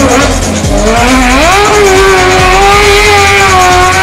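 Race car's engine accelerating hard, its note climbing about a second in and then held high at full revs.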